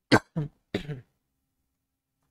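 A man coughing and clearing his throat: three short bursts within the first second, the first the loudest.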